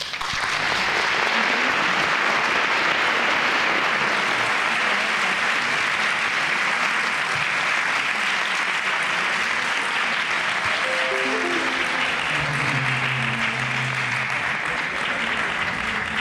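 A seated audience of a few dozen applauding steadily, a dense, even clapping that goes on for the whole stretch.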